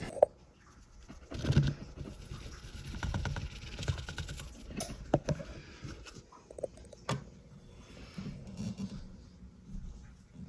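Quiet handling noises: scattered taps, scrapes and rustles as fruit flies are tapped out of a clear plastic cup into a glass terrarium, with a few sharper clicks.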